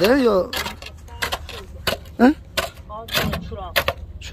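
Sharp metallic clinks and knocks, a string of single strikes spread over a few seconds, as a pry bar is worked at the foot of a large sheet-metal gate to lever it into position.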